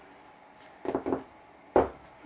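A couple of short knocks about a second in, then one sharp, louder knock near the end.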